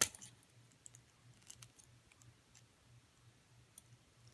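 Small metal jump ring being pinched shut by fingers on a rubber-band loom bracelet: one sharp click at the start, then faint scattered clicks as the ring and bands are handled.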